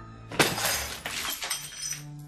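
Glass shattering: a sudden crash about half a second in, followed by breaking and falling pieces for over a second, with a smaller second crash just before it dies away.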